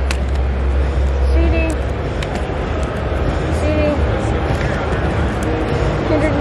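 Busy trade-show hall background: a steady low rumble with brief snatches of indistinct voices from other people, heaviest in the first two seconds.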